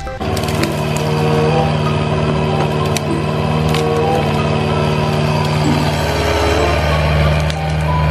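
Kubota mini excavator's diesel engine running steadily under load while it tears out brush, with a few sharp cracks and snaps of breaking wood.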